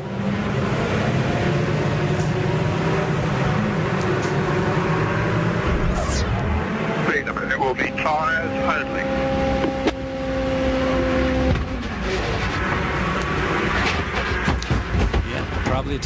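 Onboard audio from a 2007 IndyCar (Honda V8) running steadily, with a deep rumble setting in about six seconds in as the car runs on a failing tire. The team's guess is that a flat-spotted right-rear tire popped.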